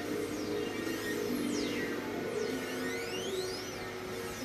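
Synthesizer-style electronic music: low held notes that change about a second in, with thin high tones sliding down and then back up over them.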